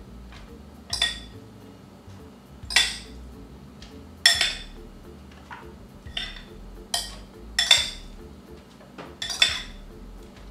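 A spoon clinking against a glass mixing bowl as meat mixture is scooped out of it. There are about seven sharp, ringing clinks at irregular intervals, every second or so.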